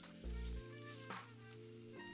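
Oil sizzling in a pan as whole spices and cashew and almond pieces fry, stirred with a spatula. Background music with sustained notes and a deep bass pulse is the loudest thing, swelling about a quarter second in.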